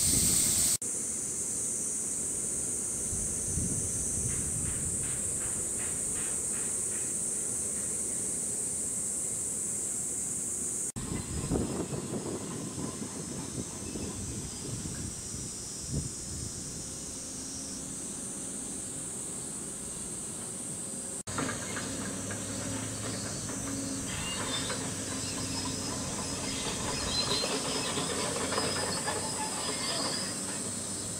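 A chorus of cicadas gives a steady, high-pitched shrill hiss, with a pulsing call over it for a few seconds, about three to seven seconds in. Its level shifts at two abrupt cuts, with light wind rumble underneath.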